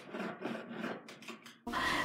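Wire being pulled quickly and repeatedly against a dining table to straighten it: faint, rapid scraping strokes that stop abruptly near the end.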